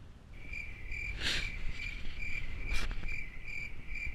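Rapid high-pitched electronic beeping, about three beeps a second, held steady, over wind buffeting the microphone, with two brief louder gusts or knocks about a second and three seconds in.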